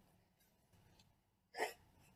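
Near silence, broken about one and a half seconds in by a single short vocal burst from a boy, a catch of laughter.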